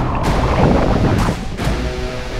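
Seawater splashing and churning against a large inflatable deck, in surges, with wind rumbling on the microphone.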